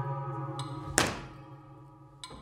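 A single sharp thunk about a second in as a long staff strikes the stage floor, with a short echo, over held musical tones that are fading away.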